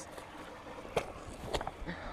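Footsteps scuffing up a muddy dirt bank, with one sharp tap about a second in and a few lighter ticks after it.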